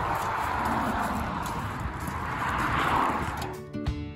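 A steady rushing noise with a low rumble. About three and a half seconds in it gives way to music with clear, sustained notes.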